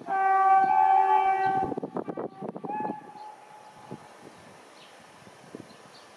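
Locomotive whistle blowing in a loud, multi-tone blast for about a second and a half, followed by a few knocks and a second, shorter blast about a second later. After that only faint background noise remains.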